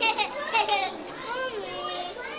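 Children's voices and chatter without clear words, several excited high-pitched calls overlapping in the first second, then a voice gliding down.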